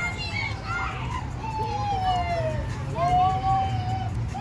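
Children playing, with a child's voice calling out in long drawn-out cries, two of them about a second each, one sliding slightly down in pitch. A low steady hum runs underneath.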